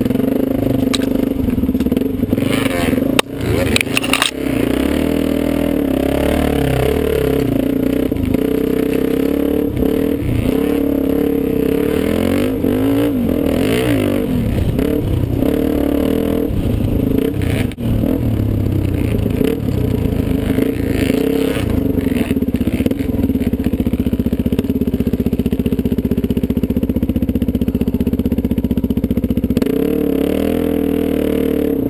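Dirt bike engine running hard along a trail, its revs rising and falling with the throttle, with a few sharp knocks about three to four seconds in.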